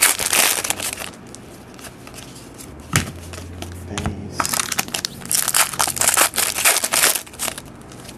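Shiny foil trading-card pack wrapper being crinkled and crushed in the hands, in two spells: one at the start and another from about four and a half seconds to near the end, with a single knock about three seconds in.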